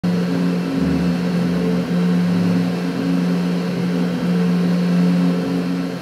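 Enclosed desktop 3D printer running a print. Its stepper motors hum in steady tones that change pitch every second or so as the print head switches moves.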